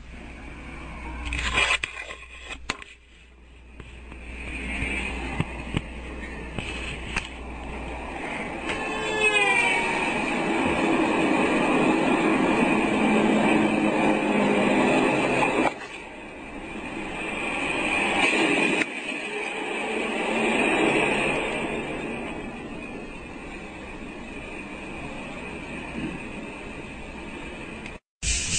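Street traffic noise, with cars going past. The sound swells about ten seconds in and cuts off sharply twice later on.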